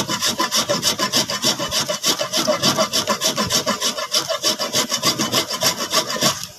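A solid lump of pot-baked salt being grated on a hand grater, in quick, even rasping strokes, several a second, as it is ground down to powder.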